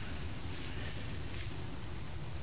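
Steady, low outdoor background noise with a faint rumble and no distinct sound event.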